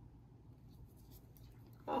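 Faint scratching of a thin wooden stick drawn through wet acrylic paint on a canvas, over a low steady room hum.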